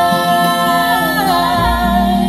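Three women singing in close three-part harmony, holding a long note that slides down after about a second.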